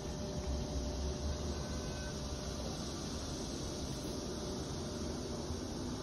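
Steady outdoor background hiss, with a low rumble during the first two seconds or so.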